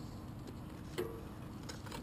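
Faint handling noise of a rag wiping a mountain bike's chainrings, with one small click about halfway through.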